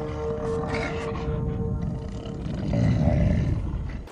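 Animated sky bison's low groaning roar, swelling about three seconds in, under a held note of background music.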